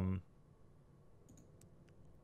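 A few faint computer mouse clicks in the second half, with near quiet between them.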